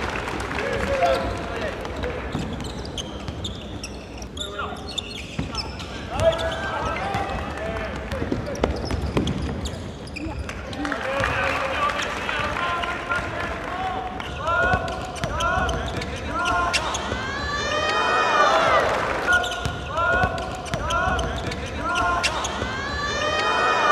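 Basketball bouncing on a hardwood gym floor, with sneakers squeaking as players run and cut. The squeaks come thick in the second half.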